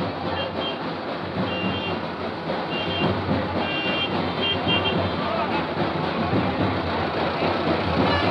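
Procession street noise: crowd chatter over a running vehicle, with short high electronic beeps, often in pairs, repeating through the first five seconds.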